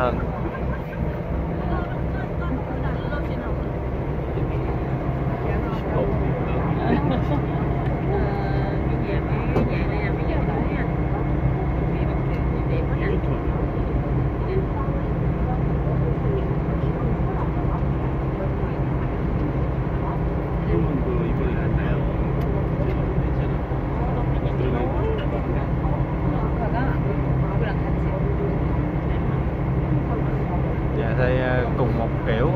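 Ferry engine running with a steady low drone throughout, under the chatter of a crowd of passengers on deck.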